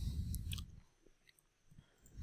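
A couple of faint computer mouse clicks over low room noise in the first half-second, then near silence.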